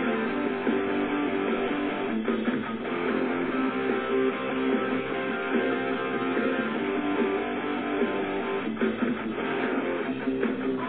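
Rock music from a radio broadcast: a song with strummed guitars and bass playing steadily.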